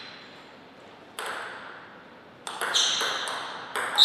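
Table tennis ball clicking off bats and table: a single tap about a second in, then a quick run of hits from about halfway through, each with a short high ring.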